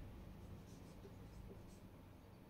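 Faint strokes of a felt-tip marker writing on a whiteboard: a few short, light squeaks and rubs.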